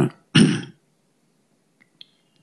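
A man clearing his throat once, a short rough burst about half a second long, right after he finishes speaking; then only faint room hum and a tiny click near the end.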